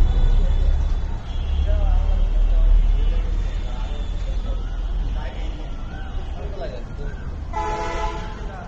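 Outdoor roadside ambience: a steady low rumble with faint distant voices, and a vehicle horn sounding briefly near the end.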